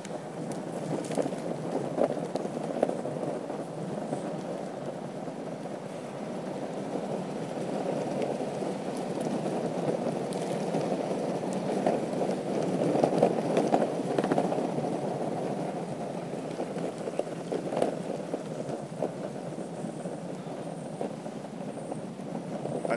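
Electric skateboard wheels rolling over rough, cracked asphalt: a steady rumbling road noise with scattered small clicks and knocks from the cracks, and wind on the microphone.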